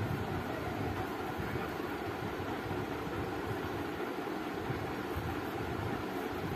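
Steady background noise: an even hiss with a low rumble underneath, unchanging and with no distinct knocks or tones.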